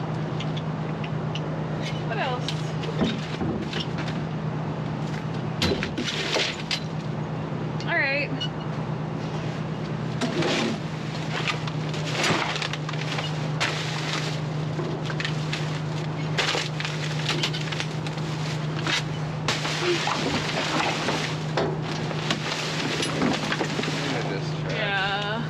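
Grabber tools rummaging through trash in a metal dumpster: irregular knocks, clatter and rustling of bags and cardboard, over a steady low hum.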